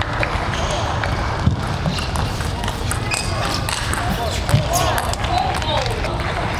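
Table tennis ball clicking sharply off rackets and the table during a rally, over the steady hubbub and voices of an arena crowd.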